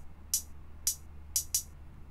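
Electronic hi-hat samples from the Auxy app's preset drum kit, sounding one at a time as hi-hat notes are tapped into the pattern: about four short, crisp ticks at uneven spacing, over a faint low hum.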